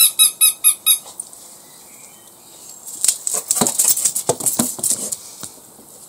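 A squeaky rubber dog toy squeaked rapidly about five times in the first second. Later comes a run of short scratchy clicks and scuffs for a couple of seconds.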